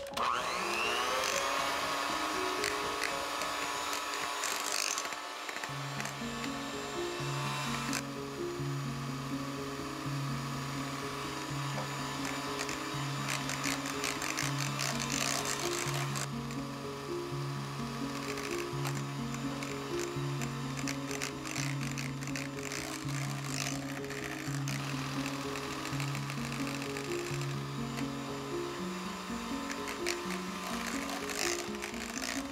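Kenwood electric hand mixer whipping cake batter. Its motor spins up with a rising whine right at the start, then runs steadily as the beaters work egg into creamed butter and sugar, with abrupt changes in the sound a few times. Background music with a repeating bass note plays alongside.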